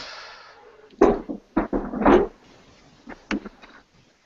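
Handling knocks and clunks as a webcam laptop is moved around a kitchen: a short fading rustle, then about five sharp bumps over the next few seconds.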